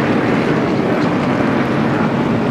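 A pack of NASCAR Winston Cup stock cars with V8 engines running together at speed, a steady engine drone from the field.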